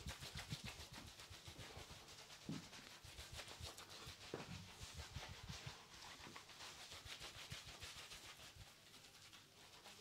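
A wet sponge scrubbing a soapy, lathered face in quick, repeated rubbing strokes, faint and close.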